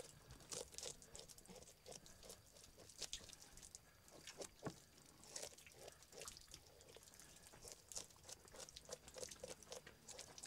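Faint, irregular scraping and clicking of a knife scaling a small fish on a plastic cutting board, many short strokes.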